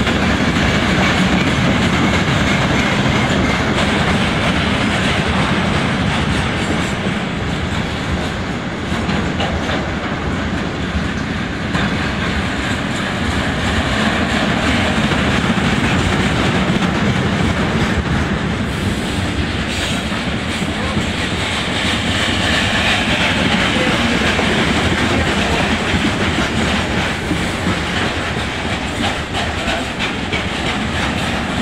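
A long freight train of tank cars and hopper wagons rolling past close by: a loud, steady noise of steel wheels running on the rails that keeps on without a break as wagon after wagon goes by.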